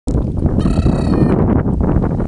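A dog giving one high-pitched excited whine of just under a second, starting about half a second in, over a loud low rumble.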